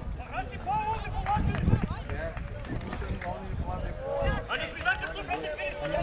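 Several distant voices of players and people around a football pitch calling and talking over one another, indistinct, with a low rumble underneath.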